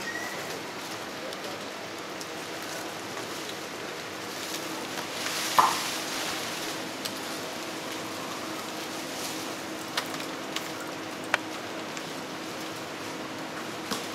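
Steady outdoor background hiss, with foliage rustling loudly for about a second some five to six seconds in as a howler monkey moves through the leafy branches. A few sharp clicks follow later on.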